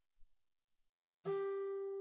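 Acoustic guitar: after a second of near silence, a single note is plucked, the G on the second string at the eighth fret, and left ringing.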